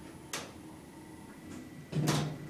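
The quiet inside an Otis Gen2 lift car stopped at a floor, with a faint steady high electrical whine. There is one short sharp click about a third of a second in, and another noise starts right at the end.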